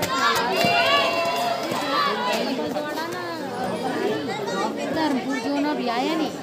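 Crowd chatter: many voices talking and calling out at once, some high and raised, over one another.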